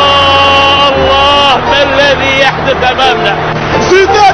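A man's voice holds one long, steady exclamation for about a second and a half, then breaks into shorter excited calls, over a steady low crowd roar of an excited football commentary.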